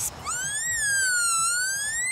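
A high whistle-like tone that slides up, dips and rises again over about two seconds, then falls away.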